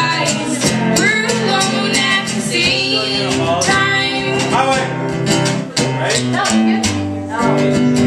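Live acoustic folk song: an acoustic guitar is played, a banjo drum is struck with a stick, and women sing together.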